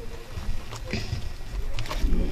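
Low steady rumble with faint voices in the background and a couple of light ticks.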